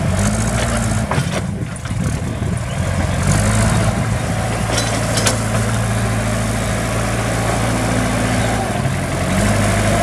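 JCB backhoe loader's diesel engine running and revving up and easing off several times as the machine drives through mud. A few short sharp knocks come about a second in and again around five seconds in.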